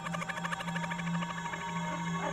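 A 'Demonic Mocking' sound-effect sample from a Reason refill playing back in the Backbone drum designer. It is a dark, processed effect: a steady low drone under a fast, fluttering buzz, with warbling tones coming in near the end.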